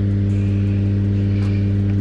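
Steady low electrical hum with a buzzy edge, unchanging throughout.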